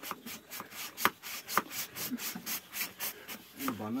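A water buffalo's horn being sawn through: quick, rhythmic back-and-forth rasping strokes, about five a second.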